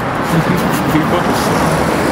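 Road traffic noise: a steady rush of cars on a nearby street, with faint voices underneath.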